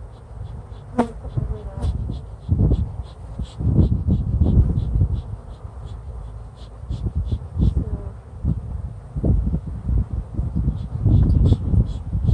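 Honeybees buzzing in large numbers around an open hive, with one bee buzzing close past the microphone about a second in. An irregular low rumble of wind on the microphone runs under the buzzing.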